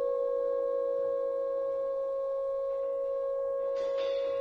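Free-improvised jazz from a trombone, guitar, piano and drums quartet: a few long, steady held tones ringing almost unchanged, and a brighter new note comes in near the end.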